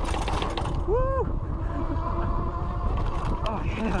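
Fat-tire e-bike speeding down a rough dirt trail: tyre rumble and wind on the chest-mounted microphone. About a second in there is a short rising-and-falling whoop from the rider, and after it a faint steady whine.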